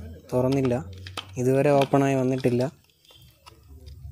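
A stone striking a clump of raw oyster shells, sharp knocks near the start and about a second in, then a few lighter taps as the shells are cracked apart, under a man's voice talking in the first half.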